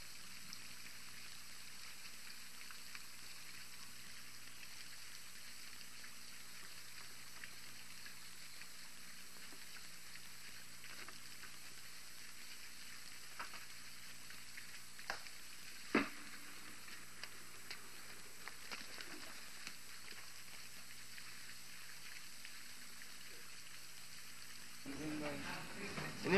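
Steady hiss of running stream water while a bucket is filled, with a few sharp knocks of the bucket about thirteen to sixteen seconds in, the last the loudest.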